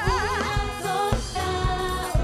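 Women's voices singing a gospel worship song with a live band accompanying them. A lead voice holds a note with wide vibrato in the first half-second, then the singers move on to steady held notes over a bass line and regular drum beats.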